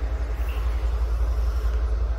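Low, steady vehicle rumble with a faint haze of noise above it.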